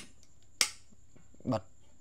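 One sharp click about half a second in: the snap of a power switch on an outlet box being flipped.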